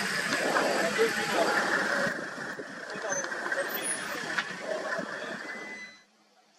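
Indistinct voices talking over a vehicle engine running, with the whole sound cutting off suddenly at the end.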